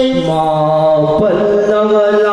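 Voices chanting a Meitei Lai Haraoba ritual song in long, steadily held notes, stepping to a new pitch about a quarter of a second in and again just past a second.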